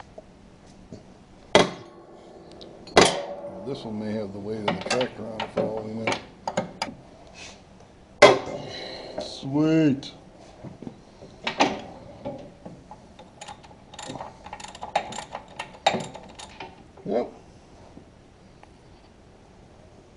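Long-handled ratchet wrench working a long bolt out of a John Deere 5520 tractor's frame: scattered sharp metal clicks and clanks, coming in quick runs around the middle and again later on. Brief stretches of low voices are mixed in.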